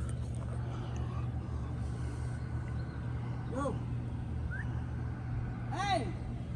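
Parked van's engine idling: a steady low hum.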